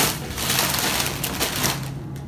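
Plastic cereal-bag liner crinkling as it is handled and folded, with the flakes inside rustling and a few sharp crackles.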